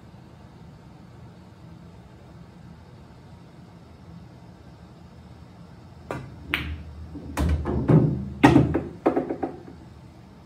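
A pool shot about six seconds in: a sharp click of the cue tip on the cue ball, a second click as the cue ball strikes the object ball, then a quick clatter of knocks over a low rolling rumble as balls roll on the cloth and a ball drops into a pocket, with the loudest knock about two seconds after the stroke.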